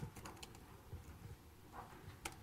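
Faint typing on a computer keyboard, a few scattered keystrokes as terminal commands are entered.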